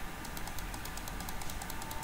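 Rapid, even clicking of a computer mouse, about eight or nine light clicks a second, as the map view is scrolled.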